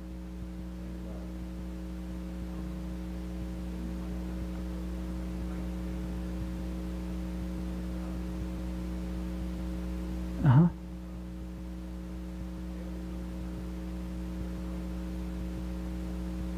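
Steady electrical mains hum from the sound system, a low buzz with a few fixed pitches. About ten seconds in, a single short spoken word cuts through it.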